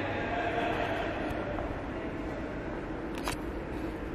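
Steady indoor room noise, with a single sharp click a little past three seconds in.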